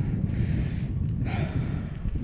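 Steady low rumble on a phone's microphone, typical of wind buffeting and handling noise while walking outdoors.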